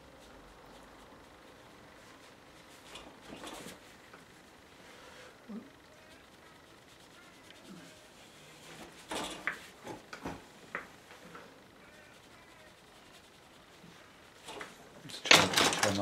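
Soft scratchy strokes of a flat brush scrubbing damp watercolour paper to lift out paint, a few quiet strokes several seconds apart. Near the end comes a short, much louder burst of noise.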